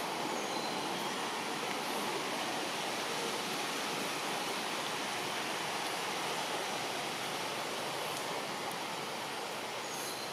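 Steady rushing outdoor background noise, even throughout, with no distinct events.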